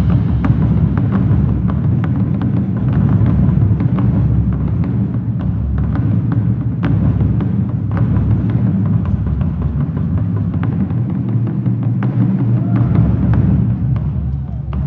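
Marching drumline playing: dense low drumming from the bass drums, with many sharp snare and stick hits on top.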